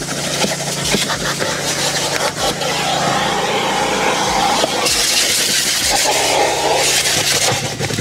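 Vacuum cleaner running, its hose and crevice tool sucking along the car's rear seat and rubber floor mat: a steady motor hum under a suction hiss that grows louder about five seconds in, with a few short knocks of the tool against the surfaces.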